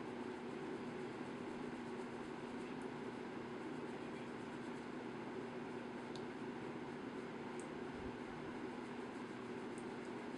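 Steady low background hum of room noise, unchanging throughout, with no clear event standing out.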